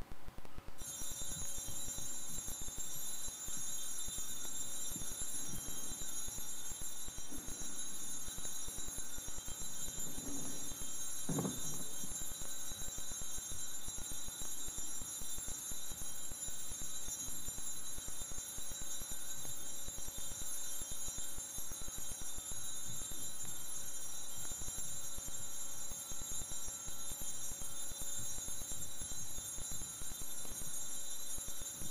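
Altar bells rung continuously, a steady high jingling that starts about a second in and does not let up, marking the blessing with the monstrance at Benediction.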